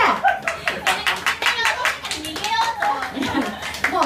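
A small crowd's hand clapping, densest in the first couple of seconds, with voices talking and calling out over it.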